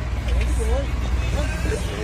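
Boat engine running with a steady low rumble, with faint voices over it.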